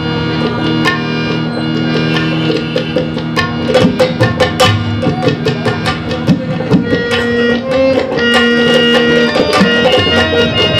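Harmonium and tabla playing an instrumental passage: the harmonium holds steady reed chords under a moving melody while the tabla plays a rhythm of sharp strokes.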